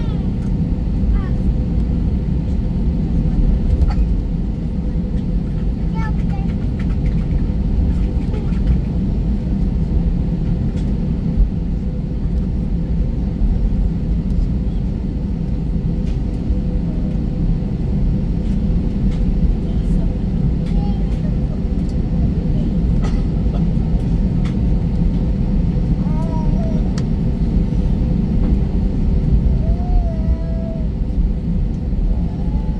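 Steady low rumble inside an Airbus A320neo's cabin on the ground before takeoff, the engines and air conditioning running evenly with no spool-up, with faint scattered clicks.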